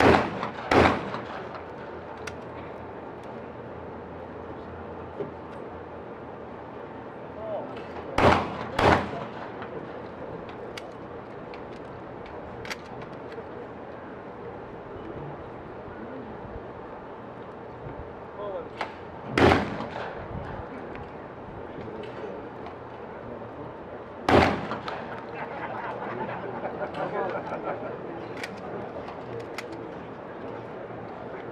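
12-gauge shotgun shots at skeet doubles: two pairs of shots, each pair about two-thirds of a second apart, followed later by two single shots several seconds apart.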